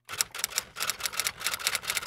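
Typing sound effect: a quick run of sharp key clicks, about five or six a second.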